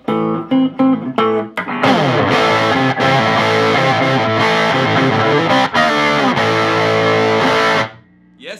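Electric guitar, a Gibson Les Paul on its neck pickup with the guitar volume rolled back, played with no pedals straight into a 5-watt Oldfield Woody amp with an 8-inch speaker. A few single picked notes, then from about two seconds in a dense, overdriven run of sustained notes that stops suddenly near the end.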